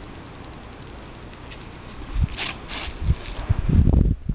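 Outdoor wind noise, then a couple of brief rustling hisses about halfway through and a run of low thumps from wind buffeting and handling of the camera as it swings, loudest near the end.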